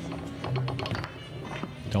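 Irregular sharp clicks and clacks of foosball play: the hard ball striking the plastic men and the table walls as the rods are worked quickly.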